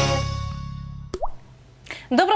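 The last chord of a TV show's intro jingle fading out, followed about a second in by a single water-drop 'plop' sound effect with a quick rising pitch. A brief hiss comes near the end.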